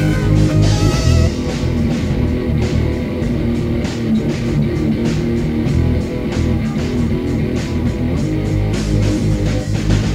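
Instrumental passage of a heavy rock song: electric guitars played over a drum kit with steady cymbal and drum hits, no vocals.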